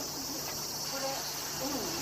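A steady, high-pitched chorus of cicadas, with faint distant voices beneath it.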